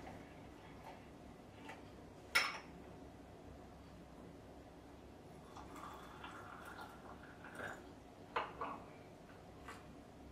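Hot water poured from a stainless steel kettle into a porcelain gaiwan and then into a glass pitcher to warm them, the pour into the glass faint and a few seconds long. A sharp clink, most likely the porcelain lid set back on the gaiwan, comes about two seconds in, with a few lighter clinks near the end.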